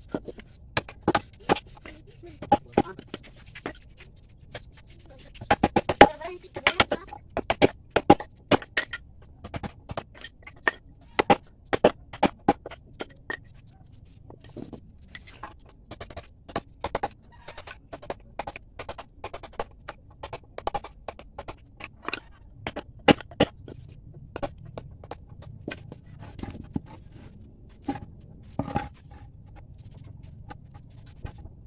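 Mallet striking a wood chisel as it cuts hollows into a driftwood slab: sharp knocks in uneven runs of a few blows a second, with short pauses between runs.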